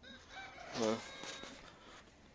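A rooster crowing once, the call peaking about a second in.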